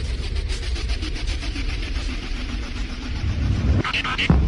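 A steady low rumbling drone with a rapid, even flutter, engine-like in character.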